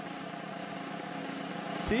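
A steady, held electronic drone of several sustained low tones, a suspense sound cue under a quiz-show moment; a short spoken 'sí' near the end.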